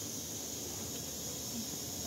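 Faint steady high-pitched hiss with no distinct sound events.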